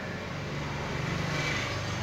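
A distant engine's steady hum that swells about a second in and then eases off, as of something passing by.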